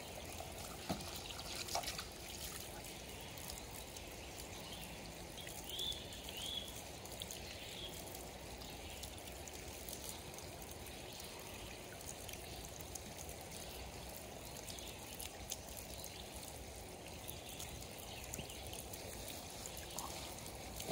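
Spring water running steadily from metal pipe spouts, pouring and trickling onto the wet boards and ground and into plastic bottles being filled. A few light knocks near the start.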